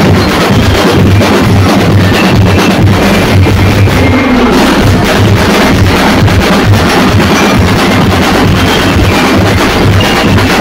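Festival street drum band playing loud, continuous percussion, bass drums keeping a steady, regular beat under the snare drums.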